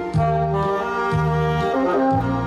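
Tenor saxophone playing a melody in held notes over an accompaniment track with a steady, regularly stepping bass line.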